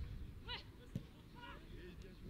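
Faint, distant voices calling out across an outdoor football pitch over a low steady outdoor rumble, with a single sharp knock about a second in.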